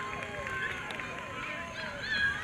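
Several voices of players and spectators shouting and calling out at once on the soccer field, with no clear words.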